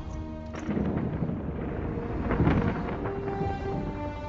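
Film soundtrack: a deep, thunder-like rumble swells from about half a second in and peaks just past halfway, under held notes of orchestral score.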